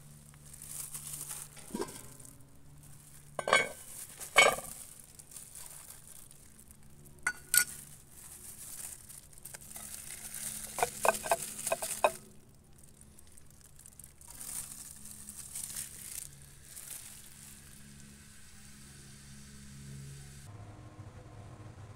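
Cookware handling while preparing food: several sharp knocks of cast-iron pots and lids, a quick run of clinks about eleven seconds in, and stretches of rustling hiss from a plastic glove working over the food.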